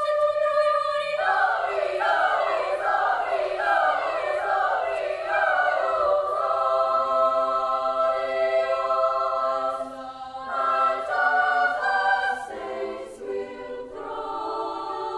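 Girls' choir singing in parts: a held note, then several voice parts enter and move about a second in, settling into sustained chords that change near the end.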